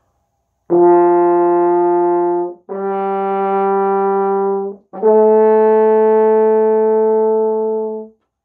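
French horn playing three long notes in a rising step, written C, D and E (open, first valve, open), each held about two seconds with a short break between, the last held longest.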